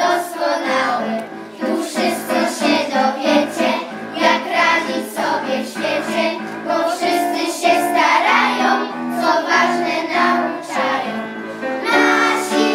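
A group of children singing a song together in Polish, with a sustained instrumental accompaniment under the voices.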